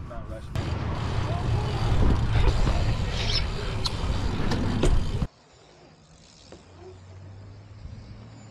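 BMX bike rolling on a concrete skate park, heard from a rider-mounted camera: loud wind rush and tyre roll with scattered sharp knocks. About five seconds in it cuts off suddenly to a much quieter stretch with a faint steady low hum.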